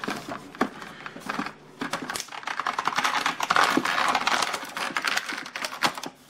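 Toy packaging being unwrapped by hand: rapid crinkling and clicking that grows denser and louder after about two seconds as a small boxed figure is freed from its wrapping.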